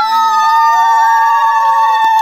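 A woman's voice holding one long, high, loud cry, steady in pitch and sinking slightly towards the end.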